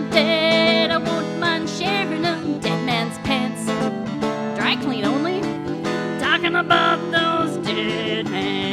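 Live folk music: a clarinet playing a wavering, bending melody over banjo accompaniment.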